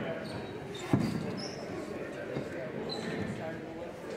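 A basketball bouncing once on a hardwood gym floor, a single sharp thud about a second in, over the murmur of voices in the gym.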